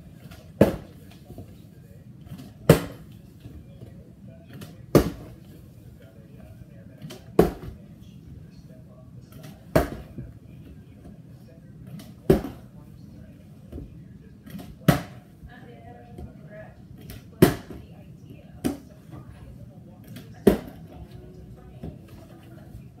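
Water bottle flipped repeatedly up a staircase, landing with a sharp thud on the wooden stair treads about every two to two and a half seconds, some ten landings in all.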